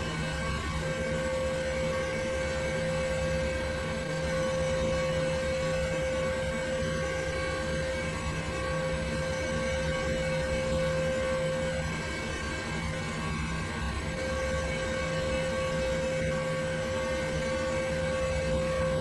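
A steady machine hum and whir with a constant mid-pitched whine, which drops out for a couple of seconds about two-thirds of the way through.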